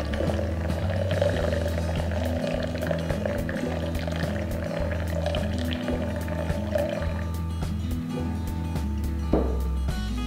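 Background music with a steady bass line, over which a thin stream of hot water is poured from a gooseneck kettle onto coffee grounds in a glass French press for the bloom; the pouring stops about seven seconds in.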